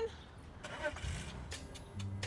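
Faint low outdoor rumble, like distant traffic, under a brief spoken word.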